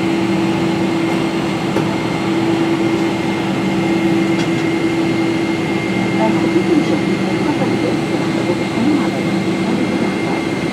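Steady cabin drone inside a Boeing 777-300ER during pushback: an even rushing noise with a low hum and a thin, high steady whine over it.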